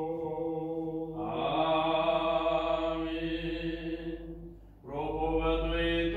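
A man chanting Orthodox vespers in long held, drawn-out notes. The voice breaks off briefly about four and a half seconds in, then starts again.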